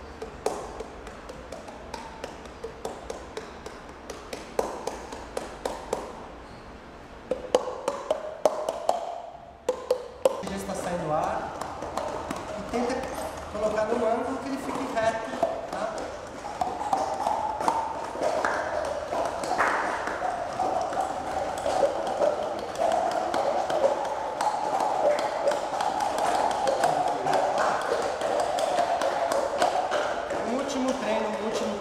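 Scattered sharp hand claps and cupped-hand taps from a group practising body percussion. A hubbub of many voices at once builds from about ten seconds in.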